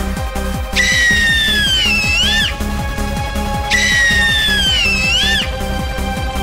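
Cartoon background music over a steady pulse, with a high whistle-like tone that slides downward and ends in a short wobble, played twice.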